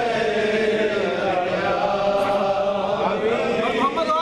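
A man chanting a naat, a devotional poem in praise of the Prophet, solo and unaccompanied, in long held notes that waver and glide in pitch.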